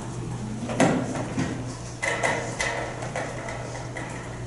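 A sharp knock, then about a second later a clatter with a brief ringing edge, typical of a metal music stand being handled and moved, over a steady low hum.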